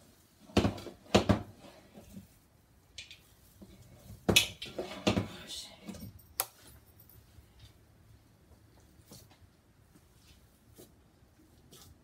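A mixing bowl and a glass loaf pan being handled on a kitchen counter: several sharp knocks in the first six or seven seconds, the loudest about four seconds in, then faint soft sounds of raw ground-beef meatloaf mixture being scooped and pressed into the pan.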